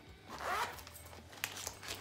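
Zipper of a small striped fabric pouch being pulled open.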